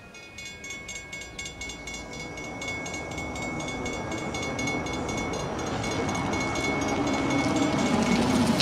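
Railroad crossing warning bell ringing rapidly and evenly, with a low rumble growing steadily louder beneath it.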